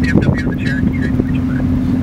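A vehicle engine running steadily with a constant hum, over a heavy low rumble, with faint voices in the background.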